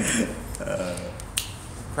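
A single sharp click a little past halfway through, after a faint low vocal sound, in a lull between speech.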